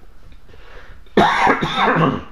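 A man coughing: a short run of rough coughs starting about a second in, after a moment of quiet.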